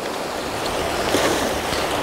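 Small waves washing onto a sandy shore, a steady hiss of surf.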